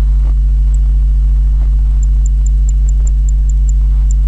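Loud, steady low electrical hum, mains hum picked up on the microphone recording, with no speech.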